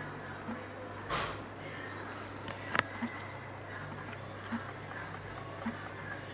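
Light clicks and taps of hands and pliers working on a homemade pulse-motor rig on a wooden board, with one sharp click a little under three seconds in, over a low steady hum.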